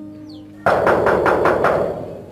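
Rapid loud banging on a metal gate, about five blows a second, starting under a second in and lasting about a second, with the sheet metal rattling. Soft background music plays underneath.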